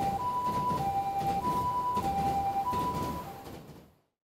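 Japanese ambulance two-tone siren (pii-poo), alternating a high and a low note about every 0.6 s over a rough background noise, fading out near the end.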